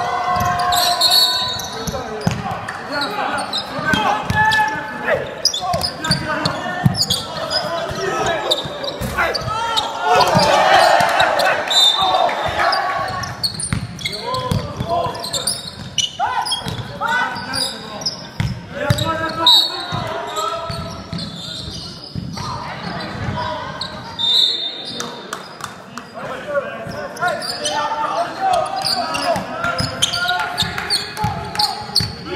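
Basketball game in a large sports hall: the ball bouncing on the court amid indistinct calling and chatter from players and onlookers, all echoing in the hall.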